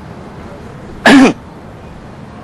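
A single short vocal sound from a person, a brief throat-clear or grunt lasting about a third of a second, about a second in, over a steady low background hiss.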